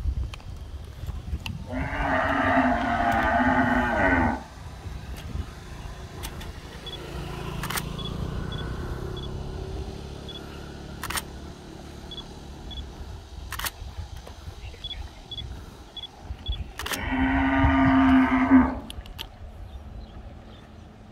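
Cattle mooing twice: a long call about two seconds in and another near the end, each lasting two seconds or more.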